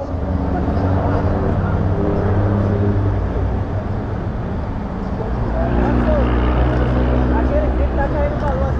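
A vehicle engine running steadily at a low pitch, with faint voices underneath.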